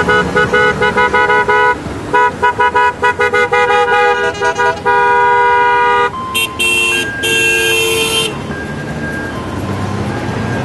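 Motorcycle horns honking as a parade of Gold Wings rides past. One horn beeps in a fast run of short toots for about five seconds and ends in a long blast. A second, brighter horn then gives two short toots and a longer blast, over the running of the motorcycle engines.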